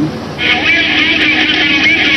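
Steady drone of an aircraft engine coming in about half a second in, with a thin, radio-like voice over it.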